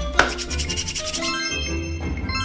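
Children's background music with a magic sound effect: a sharp hit about a quarter second in, followed by a quick glittering shimmer lasting about a second, then held music tones.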